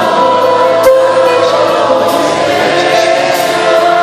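Live Persian pop song: a male singer accompanied by a string orchestra with keyboards, holding sustained notes.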